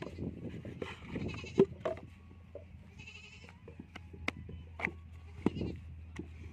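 Sharp knocks and slaps of a brick mould and wet clay worked on the ground, the loudest about a second and a half in. A goat bleats twice in the background, about a second in and again about halfway through.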